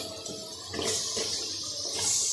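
Cut vegetables tipped into hot oil and spice paste in an aluminium karahi, sizzling with a steady hiss and a few soft knocks as the pieces land.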